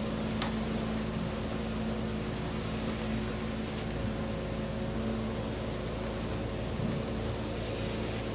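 Steady electrical hum of film-set equipment, with several steady low tones under a faint hiss and a faint click or two.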